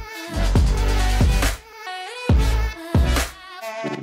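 Electronic background music with deep bass notes coming and going under a wavering synth line.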